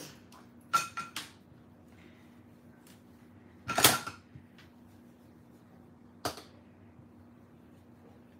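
A few sharp clicks and knocks from an ink blending brush being tapped onto a plastic-cased ink pad and worked over a plastic stencil on a craft mat. There is a small cluster about a second in, the loudest knock a little before the middle, and a lighter one past six seconds.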